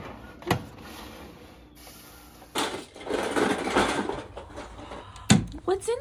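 Disposable aluminium foil roasting pan being handled on an oven rack: knocks as it is set down, then a stretch of rustling, scraping noise as it slides. A sharp knock comes near the end.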